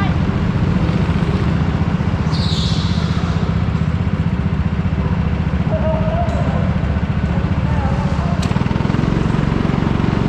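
Go-kart engine running under steady load while the kart drives a lap, heard as a loud, constant low rumble together with the drive noise. Brief squeals come in about six seconds in and again near eight seconds.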